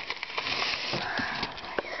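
Rustling for about a second, with a few light knocks, as a container of oats is handled.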